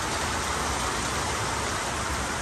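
Steady rush of falling rain and rainwater running from a downpipe through an open Monjolin Smart Filter MINI rainwater pre-tank filter.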